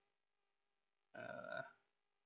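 Near silence, broken a little after halfway by one brief, faint voice sound lasting about half a second, a short murmur rather than words.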